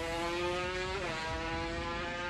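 Drag-racing motorcycles at full throttle down the strip, engine pitch climbing steadily. The pitch drops sharply at an upshift about a second in, then climbs again.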